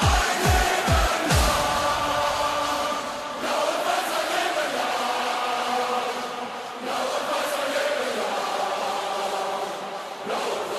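Stadium goal anthem: an electronic dance beat with a pounding kick drum that stops about a second in, then a large crowd of voices chanting and singing together in long held notes.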